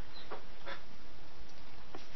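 Steady hiss from a desk microphone, with two or three faint soft clicks.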